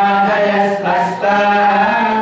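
Devotional chanting of mantras in long, held notes, with a short pause just past a second in.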